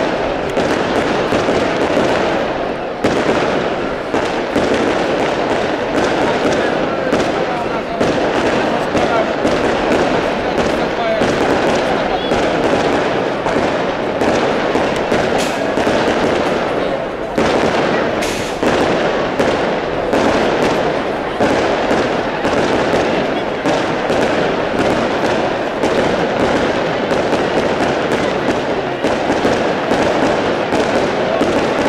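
Festival fireworks display (moschetteria): a dense, continuous crackle of rapid bangs and sparking bursts, with sharper bangs standing out now and then.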